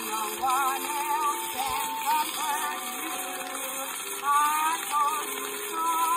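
A soprano singing with a wide vibrato over a small orchestra, played back from a Gennett 78 rpm record, with steady surface hiss.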